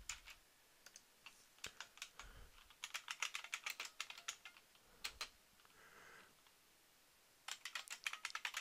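Faint computer keyboard typing: irregular runs of keystrokes, densest in the middle, with a pause of about a second near the end.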